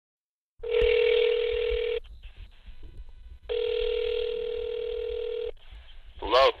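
Telephone ringing tone heard down a phone line: two long steady beeps, the second starting about a second and a half after the first ends, with faint line hiss between.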